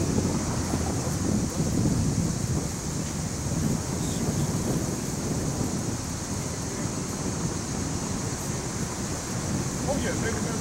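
Steady city street noise: a low rumble of traffic mixed with wind buffeting the microphone, with a steady high hiss above it and no distinct events.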